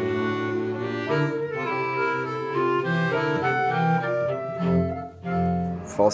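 Traditional Swiss folk tune played by a small band: a clarinet carries the melody in held notes over a low bass line, with a brief break about five seconds in before a final long note.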